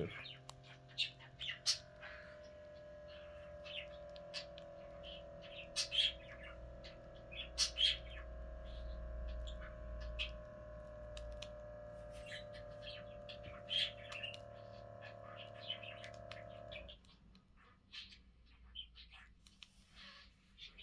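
Small electric air pump of an Aircase upper-arm blood pressure monitor running steadily as it inflates the arm cuff. The pump stops about 17 seconds in, at full pressure, and the cuff begins to deflate. Short, sharp chirps sound over it throughout.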